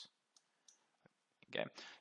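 A few faint computer mouse clicks, about four, spaced roughly a third of a second apart.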